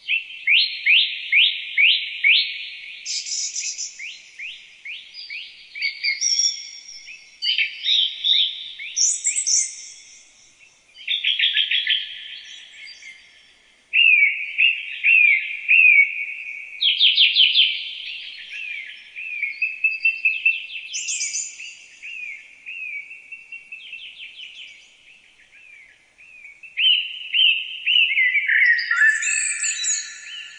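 Songbirds singing in a string of fast trilled phrases and chirps, each phrase a few seconds long with short pauses between them. The notes are high, with no low sound beneath them.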